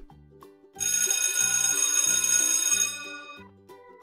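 A loud ringing alarm-clock bell sound effect starts about a second in and rings for about two seconds, signalling that the quiz countdown has run out. Light children's background music with a steady beat plays underneath.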